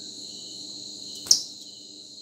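Insects chirring steadily at a high, even pitch, with one sharp click a little past halfway.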